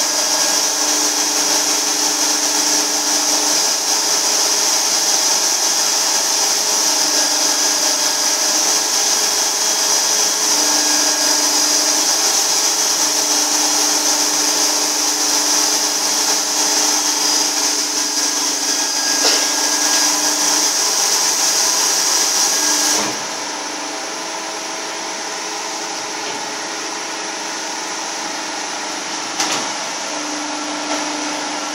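Ultrasonic cleaning machine for quartz crystal oscillators running: a steady high-pitched hiss over a lower hum that comes and goes. About three-quarters of the way through the hiss cuts off suddenly, leaving a quieter, steadier hum.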